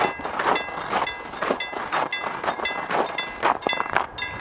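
Old-style Ericsson warning bell of a railway level crossing ringing in a steady rhythm, about two clanging strikes a second.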